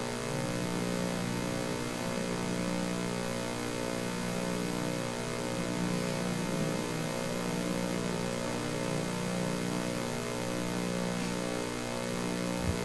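Steady electrical mains hum, a stack of even tones, from the hall's microphone and sound system.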